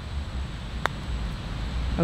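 Putter striking a golf ball once, a single sharp click a little under a second in, over low wind rumble on the microphone.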